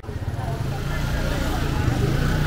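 A small motorcycle engine running at low speed, growing steadily louder as the bike comes up close.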